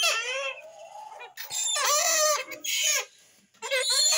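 Caged grey-headed swamphens (kalim) calling, with several short, harmonic, clucking calls in a row.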